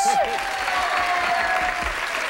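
Studio audience applauding a correct answer, with a thin steady tone held underneath that sinks slightly in pitch and stops shortly before the end.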